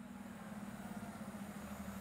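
City bus engine idling at the curb: a steady low hum that fades in and slowly grows louder.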